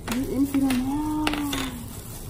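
One long drawn-out vocal note, rising at first and then slowly falling, with a few light clicks of plastic tubes being handled.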